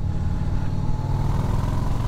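2001 Harley-Davidson Heritage Softail's V-twin engine running steadily while riding along at an even speed, heard from the handlebars.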